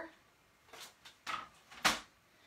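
Three short knocks and rustles of paper and a paper trimmer being handled on a work table, the last and loudest near the end.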